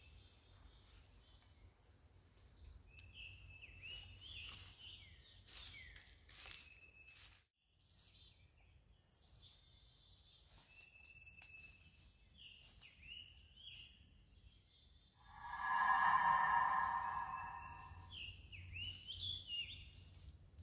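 Birds chirping repeatedly in woodland, with crunching steps in dry leaf litter during the first half. About three-quarters of the way through, a much louder sustained pitched sound of several steady tones lasts about three seconds.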